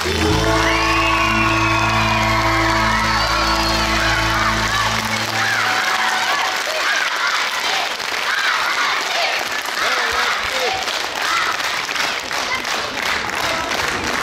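Audience applauding, with voices calling out, over the final held chord of the music, which ends about six seconds in while the clapping carries on.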